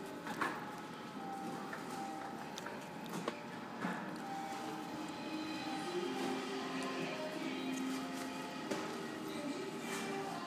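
Background music playing faintly over a shop's sound system, a melody of held notes, with a few faint knocks and the hum of a large warehouse room.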